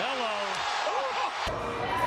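Indistinct voices with gliding pitch, then a sharp knock about a second and a half in as the sound changes abruptly.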